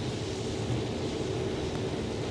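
Case IH 7240 combine running steadily while harvesting corn, with its 4408 corn head feeding and chopping stalks: an even machine drone with a faint steady hum.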